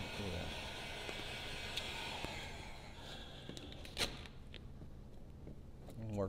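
Handheld electric heat gun blowing steadily, its fan motor humming under a rushing hiss, as vinyl wrap film is warmed and squeegeed down. The hiss eases about halfway through, and a single sharp click comes about four seconds in.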